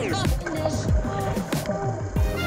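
Background music with a steady, deep beat and a falling sweep near the start.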